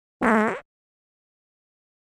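A short wavering vocal sound lasting under half a second, then dead silence.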